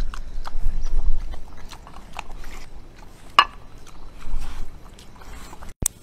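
A pig and a dog eating side by side: chewing and smacking, with many short sharp clicks.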